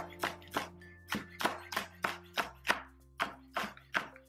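Chef's knife chopping scallions on a plastic cutting board: a steady run of knocks, about three a second.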